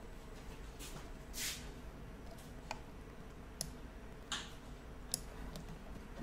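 Faint computer-mouse clicks, about five single sharp clicks spread unevenly over several seconds, with two softer hissy sounds between them.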